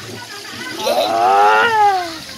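A person's long drawn-out cry, rising then falling in pitch, a ticklish reaction to fish nibbling at bare feet dipped in a pond. It starts about two-thirds of a second in and is loudest near the end.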